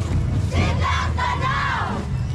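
Group of street dancers shouting together in unison, one long cry of many voices that rises and falls, starting about half a second in and lasting over a second, over a low steady rumble.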